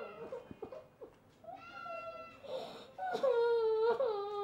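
A woman crying in long, high, drawn-out sobs, with a louder cry starting about three seconds in.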